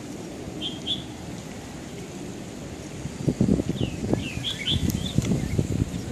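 Small birds chirping: two short chirps about a second in, then a quicker run of chirps in the second half, over a low rumble that is the loudest sound in the second half.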